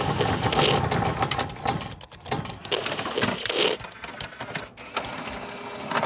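Sound effects for an animated logo outro: a fast, dense run of mechanical clicking and rattling, louder at first and thinning out in the second half.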